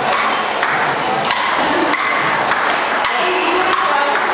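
Table tennis ball being hit back and forth, a sharp click roughly every half second, over a background of voices in a large room.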